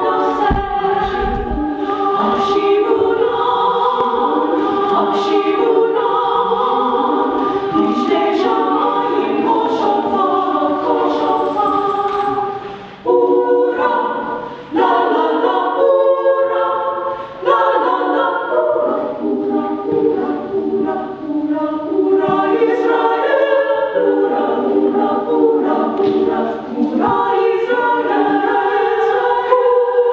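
A chorus of young voices singing an opera chorus together, with a couple of short breaks just after the middle.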